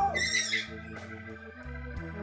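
Organ-like keyboard background music, with a short, loud, high-pitched cry in the first half-second.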